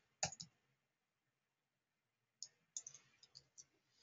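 A few faint, scattered clicks of a computer mouse and keyboard, one soon after the start and a small cluster of quick clicks in the last second and a half. Otherwise near silence.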